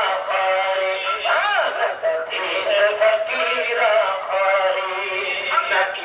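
A man singing a devotional ghazal over musical accompaniment, his voice sweeping up and down in pitch about a second and a half in.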